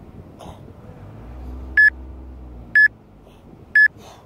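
Three short electronic beeps at the same pitch, one second apart, over faint background noise.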